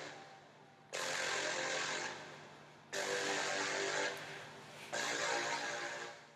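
Three bursts of hissing noise about two seconds apart, each starting suddenly and fading over a second, as bleach-and-water solution is applied to the back of denim shorts.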